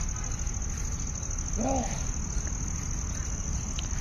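Steady high-pitched insect trill over a low background rumble, with a faint distant voice about one and a half seconds in.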